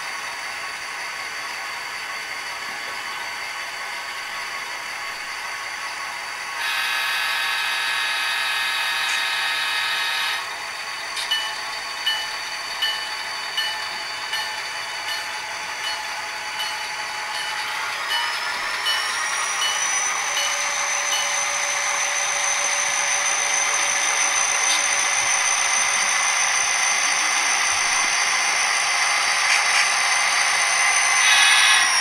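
Model diesel locomotive sound decoder playing a running prime mover. A chord of horn tones blows for about four seconds, then a bell strikes about once a second. Near the end the engine sound revs up with a rising whine and holds at the higher pitch.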